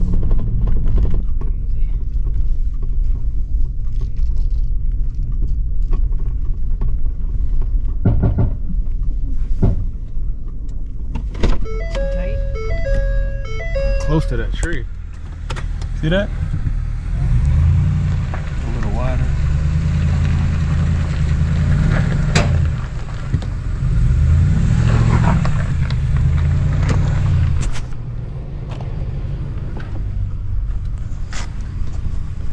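Towing truck's engine and road noise heard from inside the cab as a steady low rumble. From about sixteen seconds in it grows stronger, with more wind noise.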